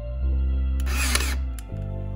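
Ryobi cordless nailer firing once into wood trim: a short whirring rush about a second in that ends in a sharp snap. Background music plays throughout.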